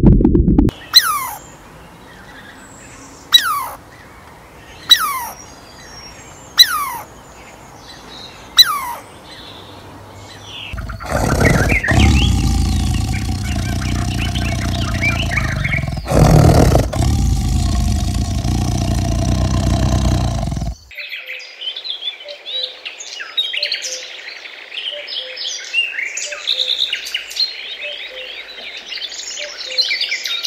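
A run of animal sounds. First come five sharp calls, each whistling down steeply in pitch, about one and a half seconds apart. Then about ten seconds of loud rumbling noise, then small birds chirping busily to the end.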